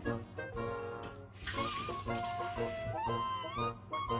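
Background music with a melody throughout; about a second and a half in, a kitchen sink tap runs for about a second, filling a small bowl with water for the pot.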